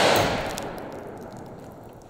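The loud report of a Desert Eagle .50 AE pistol shot dying away, its echo fading over about a second and a half.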